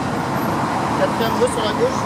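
Steady rumble of dense car traffic driving past close by, tyres running on cobblestones, with faint voices in the background.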